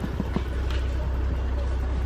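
Knuckles tapping a few times on a car's side window glass, over a steady low rumble.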